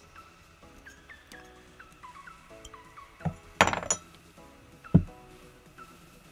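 Metal parts handled on a workbench as a small model nitro engine and a hex driver are put down: a knock about three seconds in, a short clinking rattle just after, and another sharp knock about five seconds in. Quiet background music plays throughout.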